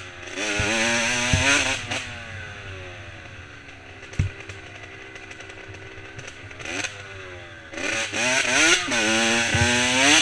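Dirt bike engine revving up and easing off on a rough trail: hard bursts of throttle near the start and again in the last two seconds, lower engine speed in between, with a few sharp knocks from bumps.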